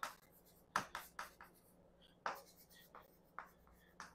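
Chalk writing on a chalkboard: short separate strokes in uneven groups with pauses between them, faint.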